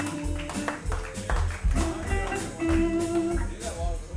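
Live blues band playing an instrumental passage: electric guitar notes held over a steady drum and bass beat.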